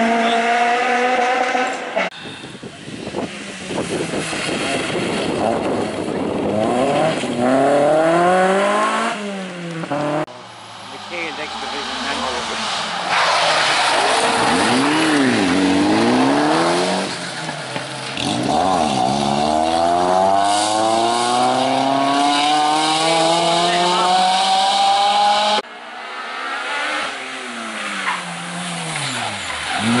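Rally car engines, several cars in turn, revving hard as they brake into and accelerate out of a tight junction: the engine note climbs under acceleration, drops back at each gear change, and swells and fades as each car passes.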